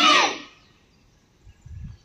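The tail of a loud, high-pitched shouted command, the karate referee's call "stop the match", ending about half a second in. Then near quiet, with a brief low rumble near the end.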